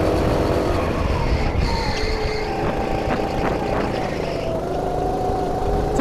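Racing kart engine heard onboard at speed under a heavy rushing noise; its pitch eases off about a second in, as off the throttle for a corner, and climbs again over the last second and a half as the kart accelerates.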